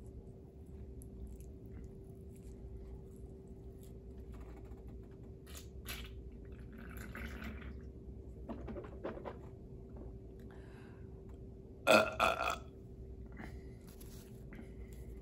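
A man drinking from a beer can, then a loud burp near the end, coming in two or three quick pulses.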